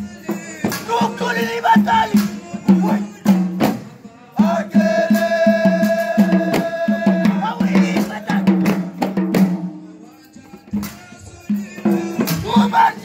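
Men's voices chanting a moulidi (Mawlid devotional chant) together over steady drum beats. A voice holds one long note in the middle, and the chant quietens briefly near the end before picking up again.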